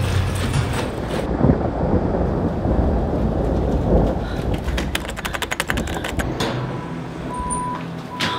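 Low, rumbling horror-film sound design, dense through most of the stretch, with a quick run of rapid clicks about five seconds in, then a thinner rumble and a steady high tone near the end.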